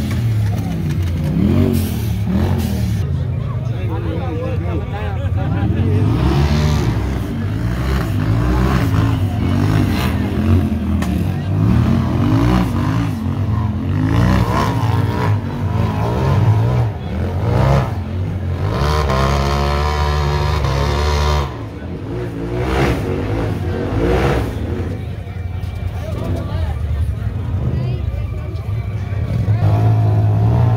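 Off-road UTV racing engines revving hard and unevenly under load on a steep rock climb, the pitch rising and falling over and over. A long high rev a little past the middle cuts off suddenly.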